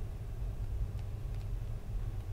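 Low steady background hum with a faint tick about a second in, from a stylus writing on a tablet.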